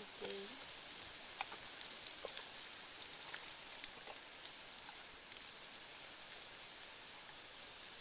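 Chopped red chilies frying in hot oil in a large metal wok: a steady sizzle with scattered sharp crackles.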